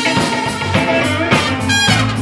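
Live blues jam band playing: electric guitar, drum kit, bass, keyboard and trumpet, the drums keeping a steady beat. A brief bright high note stands out near the end.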